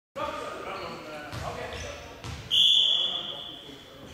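Players' voices calling across a sports hall, with two thuds of a ball bounced on the court floor, then halfway through a referee's whistle blows one long steady blast that fades off near the end. The blast is the loudest sound.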